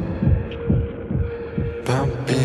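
A stripped-down break in an electronic-leaning rock track: the high percussion drops out, leaving low pulsing bass thumps under one steady held tone. The full beat comes back in with a bright hit near the end.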